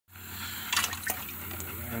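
Water sloshing and splashing in a plastic bucket holding a small caught largemouth bass, with a few sharp splashes in the first second.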